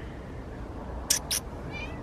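A cat gives a short, high meow near the end, just after two quick sharp clicks.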